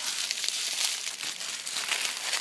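Shiny gift wrapping paper crinkling steadily as a wrapped present is handled and unwrapped by hand.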